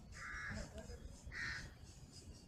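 A bird calling twice, two short calls about a second apart, over faint outdoor background noise.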